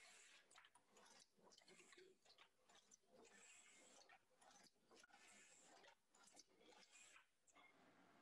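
Near silence: only faint, irregular crackling and rustling.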